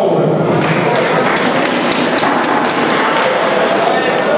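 Audience clapping in a large hall, a rapid patter of claps over crowd noise that is densest for a couple of seconds in the middle, greeting a boxer's ring introduction.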